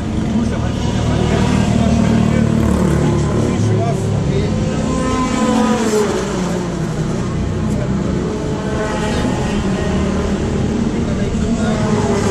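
A motor vehicle engine running steadily, with people's voices talking over it.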